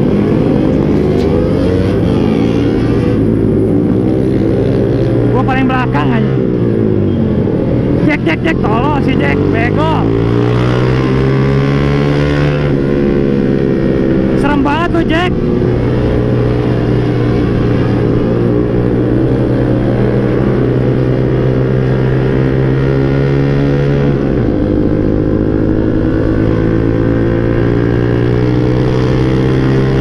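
Motor scooter engine and exhaust heard from the rider's seat, running at road speed. The engine note drops about six seconds in, climbs again as the scooter accelerates over the next few seconds, then holds steady with a brief dip near the end. Short wavering sounds come in a few times over the first half.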